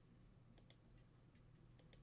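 Near silence broken by faint clicking: two pairs of quick clicks, about a second apart, from a computer mouse.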